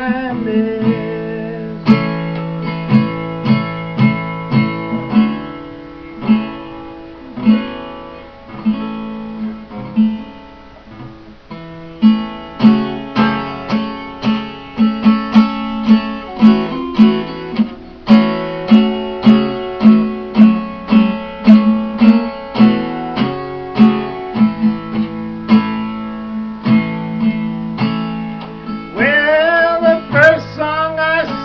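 Solo acoustic guitar playing a blues instrumental break between verses, picked melody notes over a steady repeated bass note. A man's singing voice comes back in near the end.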